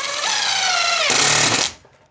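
Cordless DeWalt power driver driving a stainless steel screw through a soffit panel into the brace behind it: a motor whine whose pitch sags as the screw bites, then a louder, harsher burst for about half a second as the screw seats and pulls the panel tight, then it stops.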